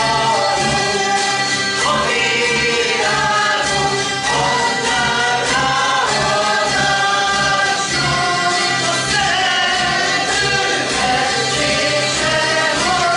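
Hungarian zither (citera) ensemble strumming a song in a steady rhythm, with the players singing along as a group.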